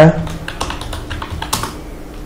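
Typing on a computer keyboard: a run of irregular key clicks as a word is typed, with one louder click about one and a half seconds in.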